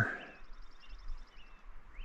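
Small birds calling: a fast, high trill lasting about a second and a half, with short falling chirps repeated roughly every half second.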